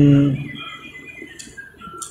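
A man's drawn-out word trails off, then a quiet pause with a few faint, short bird chirps.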